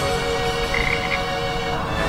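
A frog croaking, a cartoon sound effect, with music underneath.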